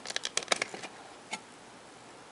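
Clear plastic CD case handled and the disc pulled off its centre hub: a quick run of light clicks in the first second, then one more click a little later.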